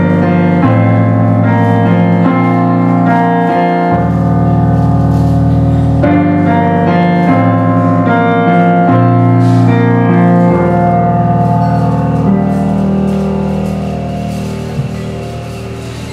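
Yamaha digital piano playing a slow solo introduction of sustained chords, the bass note changing every couple of seconds, growing softer toward the end.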